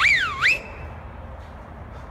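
A short, loud whistle about half a second long, sweeping up in pitch, dipping, then rising again and holding briefly.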